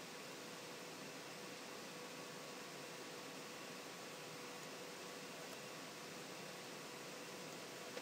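Faint steady hiss of a voice-over microphone's background noise, with a faint steady hum tone underneath.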